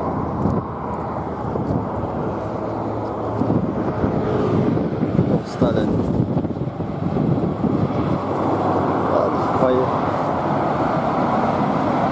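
Highway traffic passing close by: a steady wash of tyre and engine noise from cars and a light box truck, swelling briefly about halfway through as a vehicle goes past.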